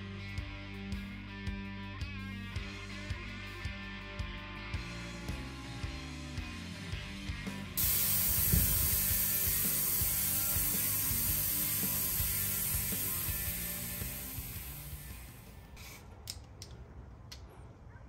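A ratchet wrench clicking in a steady rhythm as the Watts link bolts are tightened. About eight seconds in, a loud hiss of air starts suddenly and fades away over several seconds as the air-ride suspension's air springs are aired down.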